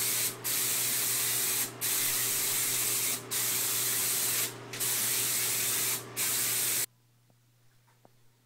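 HVLP spray gun hissing as it sprays a second coat of concrete sealer, in passes broken by short pauses about every second and a half. The spraying stops abruptly near the end.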